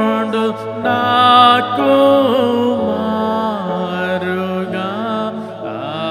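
A man singing a slow Telugu Christian devotional song solo into a microphone, in long held notes that bend and glide in pitch, over a steady low tone.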